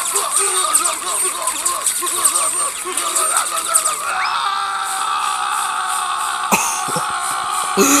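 Cartoon soundtrack: a character's voice makes quick, repeated short pitched sounds for about four seconds, then gives way to a steady sound effect with music under it.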